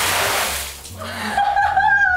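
A wooden tipping bucket dumping a load of water that splashes down for about a second. A woman then gives a high, held, laughing cry under the dousing.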